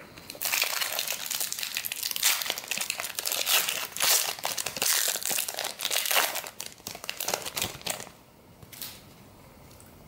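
Foil wrapper of a trading card pack crinkling as it is opened by hand and the cards are pulled out, dying away near the end.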